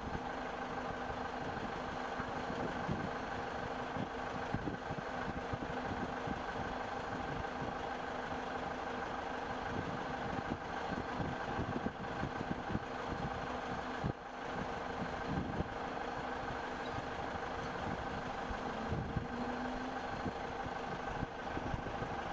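A machine engine running steadily, a continuous hum with several held tones at an unchanging speed.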